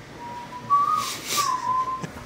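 A person whistling softly: a single held note that rises a little and falls back, with a brief hiss partway through.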